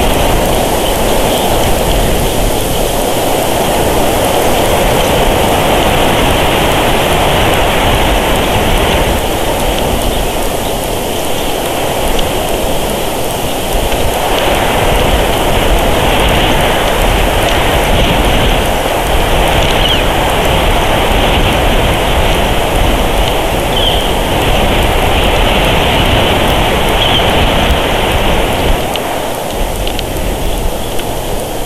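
Steady rushing noise of wind in the pine trees and across the microphone, swelling and easing a little.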